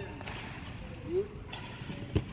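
Low background noise of a large hall, with one short voice sound that rises slightly in pitch a little past a second in.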